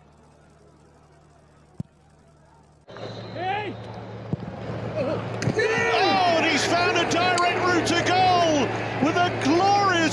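Near quiet for about three seconds, broken by one sharp click. Then several voices shout and call over one another, growing louder, over a steady low hum.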